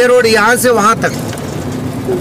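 Steady hum of a moving road vehicle heard from on board, with a voice talking briefly in the first second.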